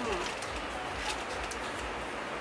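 Steady hiss of heavy rain, with faint crinkles and clicks of a small plastic packet being handled and a short hummed "hmm" at the start.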